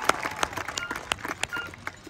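Marching band show in a quiet stretch between loud passages: scattered claps and clicks thin out while short, high notes repeat about every three-quarters of a second.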